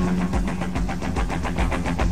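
Live rock band playing a fast, even rhythm of guitar and drums, about eight strokes a second.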